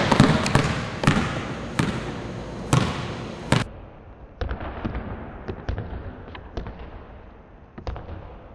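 Basketball dribbled on a hardwood gym floor: sharp, irregularly spaced bounces that ring in the hall. About halfway through, the bounces turn quieter, thinner and more frequent.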